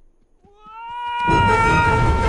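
Hawk's long screech swelling in and then held, wavering slightly. About a second in, a loud rush of sound comes in under it as the hawk swoops low.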